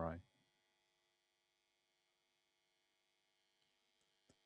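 A last spoken word ends just at the start. Then near silence, with a faint steady electrical hum.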